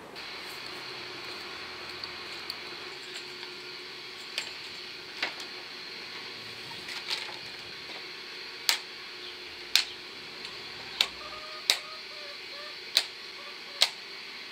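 Sharp clicks and knocks from black uPVC guttering being fitted by hand at the eaves. They come irregularly, a few at first and then about once a second in the second half, over a steady background hiss.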